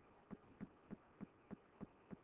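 Near silence with a faint, regular ticking, about three ticks a second.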